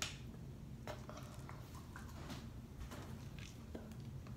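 Faint handling of a plastic water bottle: a few small, scattered clicks and crinkles over a steady low hum.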